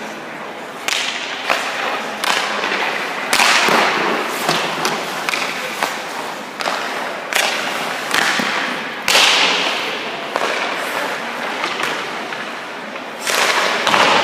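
Ice hockey goalie's skate blades scraping the ice and leg pads dropping onto it as he pushes and slides through crease movements: about a dozen sharp hissing scrapes, each fading within a second, mixed with a few short thuds.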